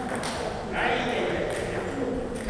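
Table tennis ball clicking sharply off paddles and the table during a rally.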